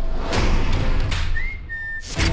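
Trailer sound-design hits: a deep boom with a whoosh about a third of a second in and a second hit near the one-second mark, over a low rumble. Near the end a single high whistle slides up and then holds steady.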